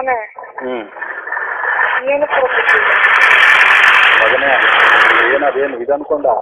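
Loud, steady hiss of static-like noise, about four seconds long, over muffled speech: audio disturbance in a poor-quality, narrowband recording.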